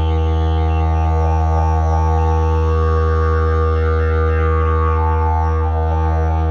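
Elm-wood Evoludidg didgeridoo, with a pear-wood mouthpiece and zebrano bell, played as one continuous low drone. The overtones above the drone keep shifting and sweeping in waves.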